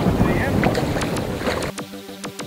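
Wind rumbling on the microphone, with background music's notes sounding through it; the wind noise cuts off shortly before the end, leaving the music.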